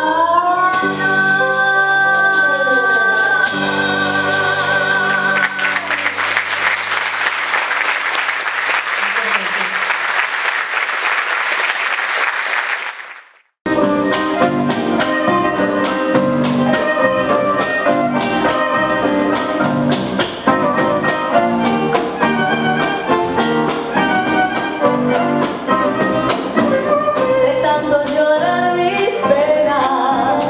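A female folk singer holds the final note of a song over an acoustic band, then audience applause that fades away. After an abrupt cut about halfway through, the band starts another Argentine folk piece with guitars, violin, bass and drum kit.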